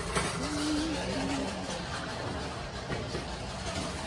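Steady background noise of a large warehouse-style store, with a faint voice in the distance for about a second near the start.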